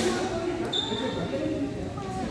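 Court shoe squeaking once, briefly and high, on a sports-hall floor during badminton play, over people talking.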